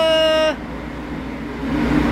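A man's drawn-out call of "halo" held on one pitch, ending about half a second in, then the steady drone of the ship's engines and machinery.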